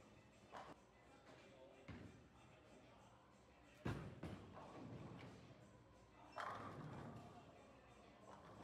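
A bowling ball thuds onto the lane at release, rolls with a low rumble, and crashes into the pins about two and a half seconds later.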